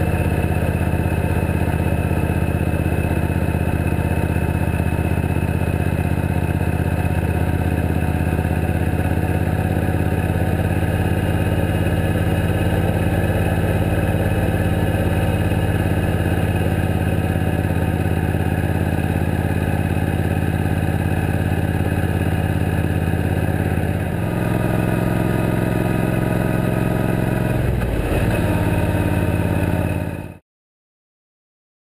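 Suzuki Boulevard C90T V-twin cruiser motorcycle running steadily at road speed, heard from a camera mounted on the bike. About three-quarters of the way through, the engine note changes and eases off, and it shifts again near the end.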